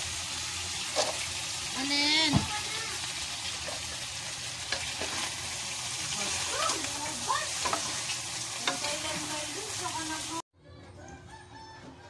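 Chicken and pork pieces sizzling as they sauté in a pot, stirred with a utensil, a steady frying hiss. A short pitched call rises and falls about two seconds in, and the sizzle cuts off suddenly near the end.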